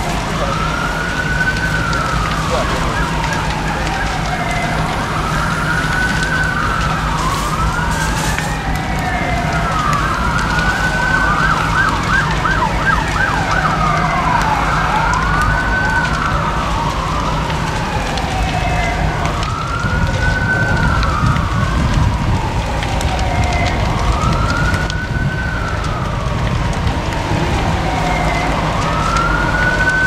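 Emergency vehicle sirens wailing, each slowly rising and falling about every four to five seconds, with two sirens overlapping in the middle, over a steady low hum.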